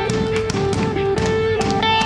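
Live worship band playing an instrumental passage: electric guitars and sustained melody notes over a steady beat.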